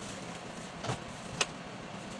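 Bag heat sealer being worked by hand: two sharp clicks about half a second apart over a steady hiss.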